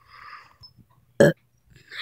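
A child's short, loud burp about a second in, after a soft breathy sound at the start.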